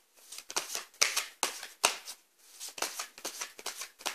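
A deck of tarot cards being shuffled by hand: a run of crisp, irregular papery snaps, several a second, with a short lull about two seconds in.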